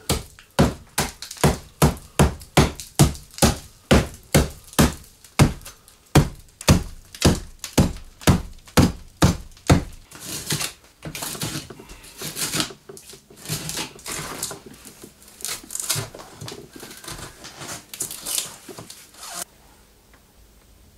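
Claw hammer striking a rotted roof timber, about two blows a second for some ten seconds. Then come quieter, irregular knocks and crackling as the rotten wood breaks away.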